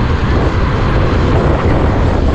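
Motorcycle riding at a steady speed: a continuous engine drone buried under loud, low wind rush on the microphone.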